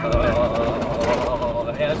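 A man's voice holding one wavering note, over the rumble of a four-wheel-drive cabin running on a corrugated gravel road.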